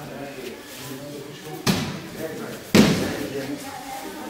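Two thuds about a second apart, the second louder: aikido practitioners being thrown or taken down onto the dojo mat.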